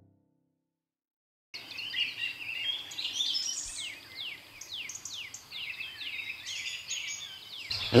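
Songbird singing outdoors, starting about a second and a half in: a long run of quick downward-sliding whistled notes, about two a second, with a few higher chirps among them.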